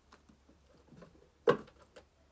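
Faint handling rustles of a small card-deck box, with one sharp knock about one and a half seconds in.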